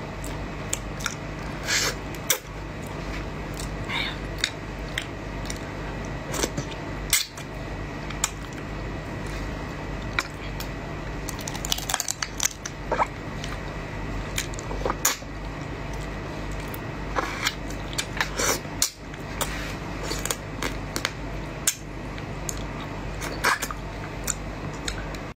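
Close-up eating of shell-on shrimp in chili sauce: irregular crunches and cracks of shell, wet sucking and lip smacks, over a steady low hum.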